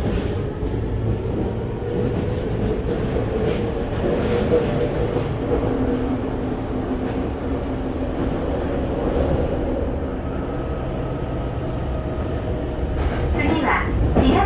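Tokyo Metro 7000 series electric train with Hitachi IGBT-VVVF control running, heard inside the passenger car: a steady rumble of wheels on rail with faint steady humming tones from the drive, at changing pitches. An on-board announcement begins near the end.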